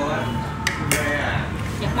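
Tableware clinking at a dining table: two sharp clicks, about two-thirds of a second and one second in.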